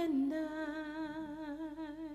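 A woman's voice, unaccompanied, humming one long note with a slight vibrato that slowly fades.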